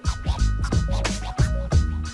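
Background music with a steady beat, drums and bass.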